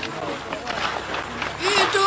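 Indistinct voices, with a man's singing voice coming in near the end.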